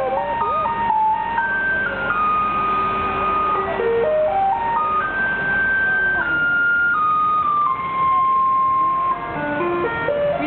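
Taiwanese garbage truck's loudspeaker playing its electronic tune, a slow melody of single held notes stepping up and down. It is the signal that the truck has arrived for residents to bring out their garbage.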